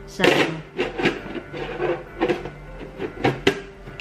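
A short rustle, then a series of light knocks and clinks as a clear glass lid is handled and set onto a glass bowl.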